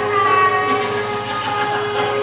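Karaoke backing music holding a sustained chord of a few steady tones after the sung vocal has stopped.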